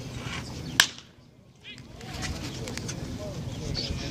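A baseball struck by a wooden bat: one sharp crack about a second in. Scattered voices of players and spectators can be heard around it.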